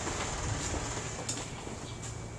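Steady low background hum with a few faint light clicks.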